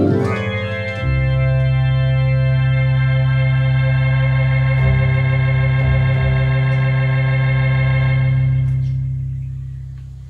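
Electronic home organ playing a quick run of notes, then holding one closing chord for about seven seconds, with a slight waver coming into the tone about five seconds in, before it fades away near the end.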